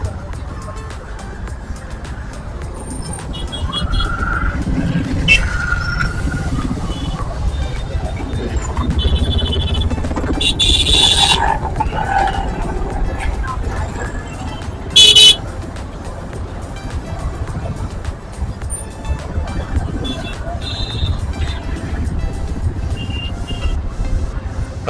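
Road rumble of a ride through busy city traffic, with vehicle horns honking several times; the loudest is a short, sharp horn blast about 15 seconds in.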